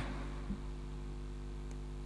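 Pause in the speech: a steady low hum and faint hiss from the microphone system, with one small click about half a second in.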